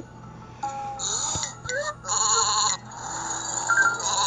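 Cartoon sheep bleating as a sound effect in an animated story app, over light background music: several bleats, with a wavering, shaky pitch.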